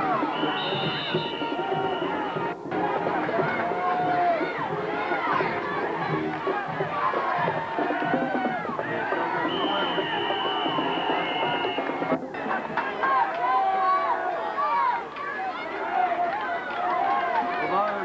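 Stadium crowd at a high school football game: many voices talking and shouting at once, with music mixed in. A high steady tone is held for about two seconds, twice. The sound cuts out briefly twice.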